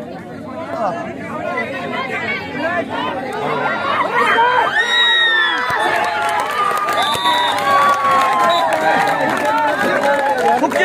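Crowd of spectators at a kabaddi match shouting and cheering, many voices at once. It swells from about four seconds in, with long high shouts as a raider is tackled.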